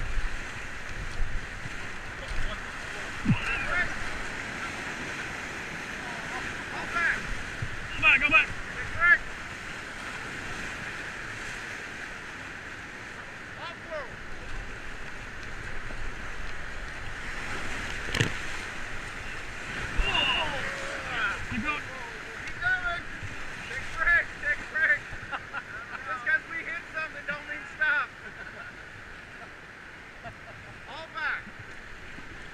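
Whitewater rapids rushing and splashing around an inflatable raft, with a few sharp knocks as the paddles and waves strike. Voices call out now and then over the water.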